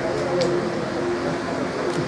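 Indistinct speech: a voice in the room, with no clear words.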